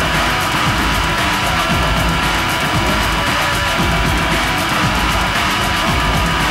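Horror punk rock recording playing at a steady, loud level: distorted electric guitars and drums.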